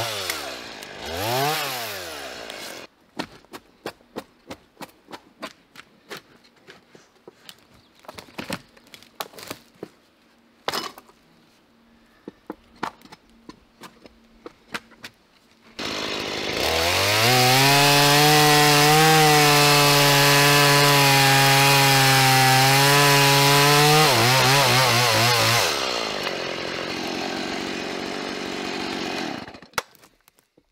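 Chainsaw bucking a felled tree trunk. It revs up and down in quick bursts for the first couple of seconds, then gives way to scattered sharp knocks and clicks. About halfway in the saw winds up to full throttle and holds steady for about eight seconds through a cut, then drops back and runs lower until it cuts off near the end.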